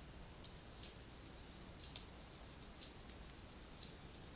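Faint light rubbing and ticking of a stylus on a tablet screen while handwriting, with two sharper taps about half a second and two seconds in.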